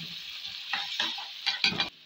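Onions and ginger-garlic paste sizzling in hot oil in a metal kadhai while a metal slotted spoon stirs them, scraping and knocking against the pan several times, most strongly near the end. The sound cuts off suddenly just before the end.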